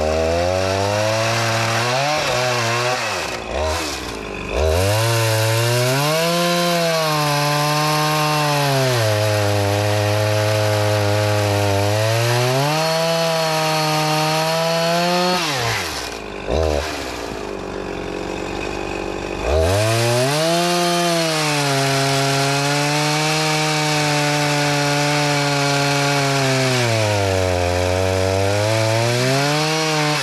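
Husqvarna 353 two-stroke chainsaw cutting firewood logs at high revs in two long cuts, its engine speed sagging and climbing as the chain works through the wood. It drops back briefly near the start and idles for a few seconds around the middle. The saw is being test-cut after its carburettor's high and low mixture screws were readjusted with the limiter caps cut off.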